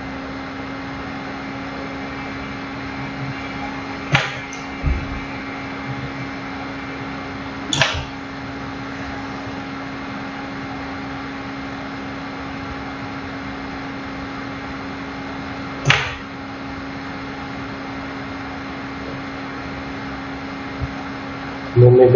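A steady electrical hum with a few sharp taps, about 4, 8 and 16 seconds in, as a plastic drawing template and pen are set down and shifted on a drawing board.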